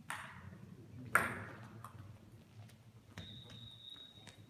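Table tennis ball sounds in a sports hall. Two sharp knocks ring out in the hall, the second louder, at the start and about a second in. Near the end come a few light ball taps about a third of a second apart, with a steady high-pitched tone.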